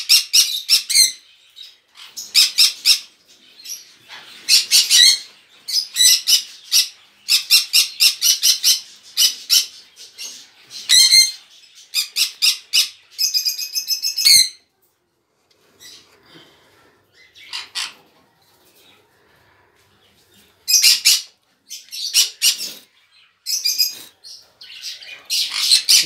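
Green-cheeked conures (yellow-sided and pineapple mutations) squawking: loud, harsh, high calls in quick series. They fall mostly quiet for a few seconds past the middle and start again near the end.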